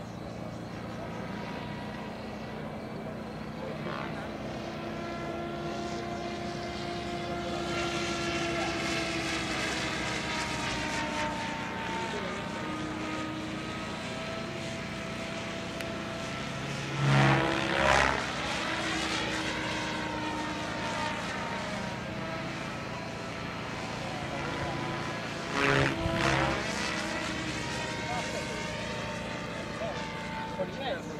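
Radio-controlled model helicopter flying aerobatic manoeuvres, its motor and rotor whine shifting slowly up and down in pitch. It swells loudly twice, once about two-thirds of the way through and again near the end, with a sweeping change of pitch as it passes close.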